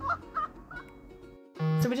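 Soundtrack of a mountain-biking video playing through laptop speakers, with sliding pitched notes, cut off abruptly about a second and a half in. A woman's voice begins just after.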